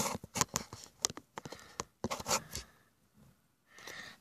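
Handling noise of a phone being set in place and adjusted: a quick run of clicks, scrapes and rustles, then quiet for about the last second.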